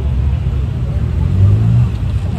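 A loud, steady low rumble, with faint voices in the background.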